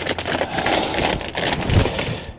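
Clear plastic bag crinkling and rustling as it is handled, with a plastic model-kit sprue shifting inside it: a dense run of quick crackles.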